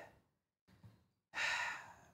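A man sighs into the microphone, a breathy exhale that starts a little past halfway and fades away, after a faint breath in. It is a sigh of reluctance, acting out someone who would rather not go.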